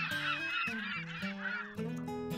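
A flurry of bird calls and chirps, quick and wavering, that dies down near the end, over soft background music of steady held notes.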